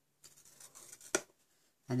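The plastic scoring tool of an Envelope Punch Board drawn along the board's score groove across paper, a faint scraping for under a second, followed by one sharp click.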